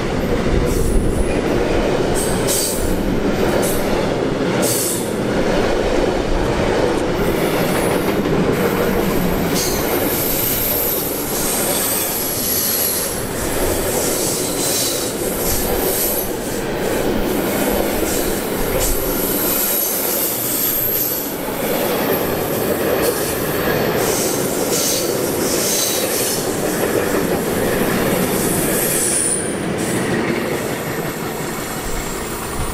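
Intermodal freight train of wagons carrying lorry semitrailers rolling past close by: a loud, steady rumble of wheels on rail, with repeated clicks over rail joints. High-pitched wheel squeal comes and goes, clearest about a third of the way in, past the middle and near the end.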